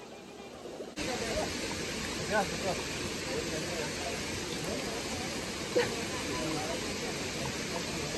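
Steady rush of a shallow rocky river, coming in suddenly about a second in, with people's voices talking faintly over it.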